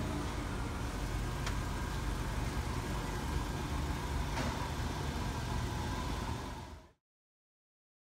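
Car engine idling steadily, with two faint clicks about a second and a half and four and a half seconds in; the sound cuts off suddenly about seven seconds in.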